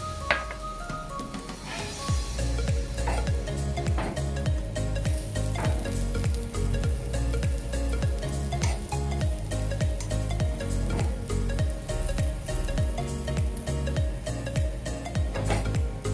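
Beaten egg and bread slices sizzling in a nonstick frying pan, with a spatula scraping and lifting the egg and occasional small clicks against the pan. Background music with a steady beat plays along.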